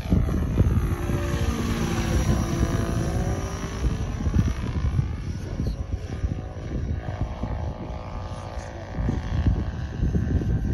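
Electric giant-scale RC Chinook tandem-rotor helicopter flying past: the whine of its electric motor and the beat of its two rotor heads, the pitch sliding as it goes by. Wind gusts on the microphone underneath.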